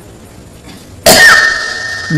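A man's single sharp cough about halfway through, sudden and loud, then tailing off.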